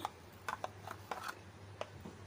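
About half a dozen light clicks and taps of a metal spoon against glass as spice is spooned onto raw chicken pieces, over a faint steady hum.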